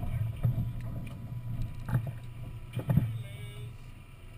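Knocks and thumps carried through the hull of a Thistle sailboat as crew move about aboard, rigging it, over a steady low rumble. The loudest knock comes about three seconds in.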